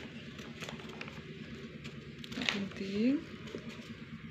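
Scissors snipping through a sheet of paper in a run of small cuts, slowly. A short voice sound rises briefly about two and a half seconds in.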